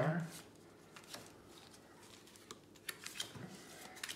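Cardboard trading cards being thumbed through by hand: soft slides and light clicks of card on card, with a small cluster of sharper ticks about three seconds in.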